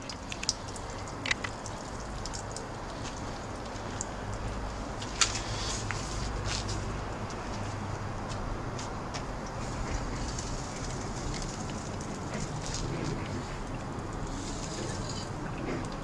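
Steady low rumble of distant city traffic with scattered light clicks, most of them in the first few seconds.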